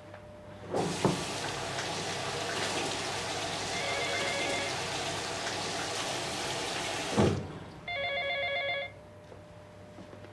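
Sink tap opened about a second in, water running steadily into the basin, then shut off a little after seven seconds. About a second later an electronic telephone ringer trills once, briefly; a fainter ring is also heard under the running water.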